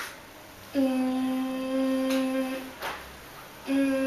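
A phone ringing for an incoming call: a steady, low, hum-like ring tone, one long ring of about two seconds and then a second, shorter ring near the end.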